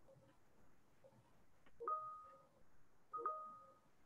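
Two faint telephone keypad tones, each a short two-pitch beep opening with a click, about a second and a half apart.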